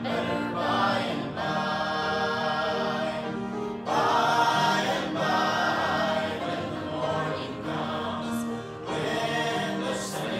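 Church hymn singing: many voices singing together in long held notes that change every second or so.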